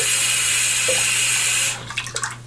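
Faucet stream pouring into a sink half full of soapy water, running steadily, then turned off about 1.7 s in, leaving a few drips.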